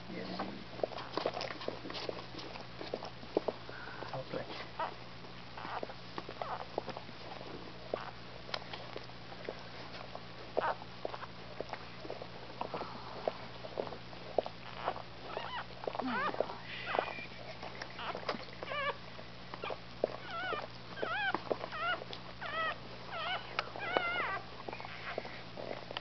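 Mother Scottish Terrier tending her newborn puppy with many small wet licking clicks. In the last third the newborn puppy gives a run of short, high squeaks that rise and fall.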